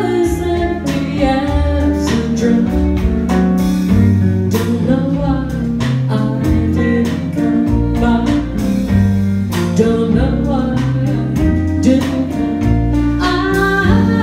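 Live band music: a woman singing over keyboard and electric guitar, with a walking bass line underneath.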